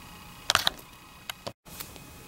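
A few short, sharp clicks and knocks of handling against a quiet room, with a brief total cut-out of sound about one and a half seconds in, where the recording is edited.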